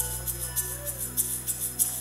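Live band playing: a low note held steady under a quick, even percussion pattern in the highs, with faint melody tones above.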